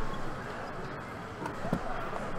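Handling noise from a metal trading-card tin: a sharp knock at the start and a few light clicks as it is opened and the cards are handled, over the steady murmur of a crowded hall.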